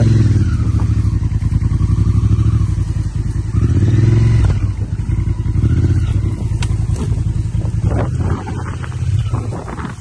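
Adventure motorcycle engine pulling at low speed with uneven throttle, rising in revs twice as the loaded bike is forced up a narrow, overgrown trail. A few sharp clicks are heard about two-thirds of the way through.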